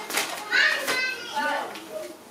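Indistinct talking, not addressed to the room, with a high-pitched voice like a child's about half a second in.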